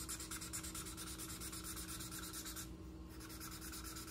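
Thick black felt-tip marker scribbling over paper in quick back-and-forth strokes as a large area is coloured in solid black. There is a short break in the strokes about three seconds in.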